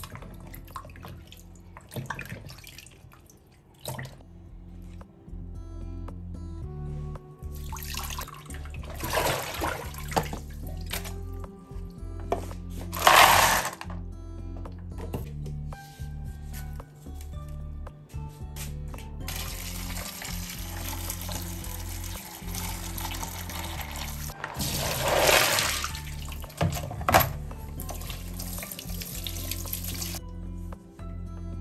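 Background music over a kitchen tap running and food being washed by hand in a plastic bowl of water in a steel sink. The splashing grows louder at several points, most of all about 13 and 25 seconds in.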